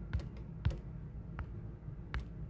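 A few light taps, roughly one every two-thirds of a second, over a low steady hum.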